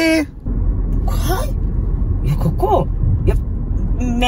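Steady low rumble of a moving car heard from inside the cabin: road and engine noise, starting about half a second in as a voice stops.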